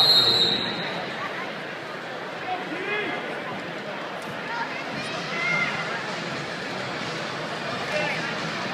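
Crowd murmur and scattered voices of spectators filling a large indoor arena, steady throughout. A short high steady tone sounds right at the start.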